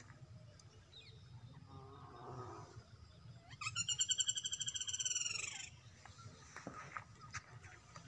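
A high, rapidly pulsing animal call lasting about two seconds, preceded by a fainter, lower call.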